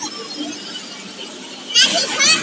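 A child's high-pitched squeal near the end, over a low background of children playing and people chattering.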